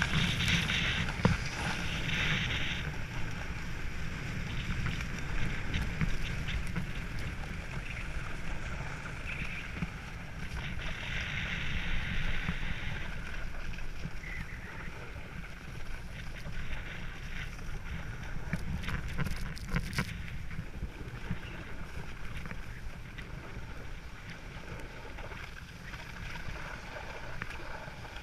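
Snowboard sliding and carving down groomed snow: a continuous rushing scrape of the board on the snow that swells into louder hissy stretches during turns, near the start and again about halfway through. Wind rumbles on the camera's microphone underneath.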